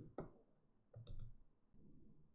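Faint clicks of a computer mouse: two quick clicks at the start and another short cluster about a second in, over quiet room tone.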